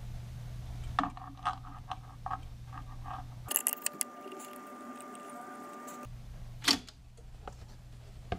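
A plastic tape reel being handled and seated on the spindle of an Akai reel-to-reel deck: a run of light clicks and knocks over a steady low hum, a faint steady whine for a couple of seconds in the middle, and one sharp knock, the loudest sound, about two-thirds of the way through.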